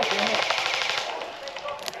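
Airsoft gun firing a rapid full-auto burst, a fast rattle of shots lasting about a second before it stops.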